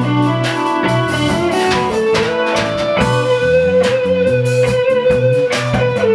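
Live blues-rock band playing an instrumental passage: electric guitar over bass, drums and keyboard, with a long held note from about halfway through.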